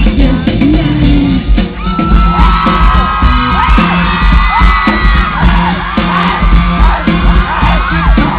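Live band music with a steady drum and bass beat, loud, with a male voice singing into a microphone at first; from about two seconds in, many high-pitched screams and whoops from the audience over the music.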